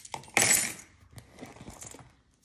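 A leather handbag being handled: rustling with small metallic clinks from its clasp and hardware, loudest briefly about half a second in.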